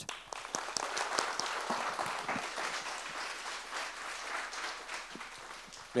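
Audience applauding, starting at once and thinning out slightly near the end.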